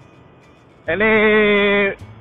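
A man's voice drawing out the word "ini" in one held, slightly wavering note for about a second.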